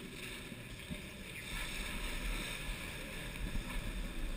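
Skis sliding over snow as a skier sets off down the slope: a steady hiss of the snow under the skis, with a low rumble that grows about a second and a half in.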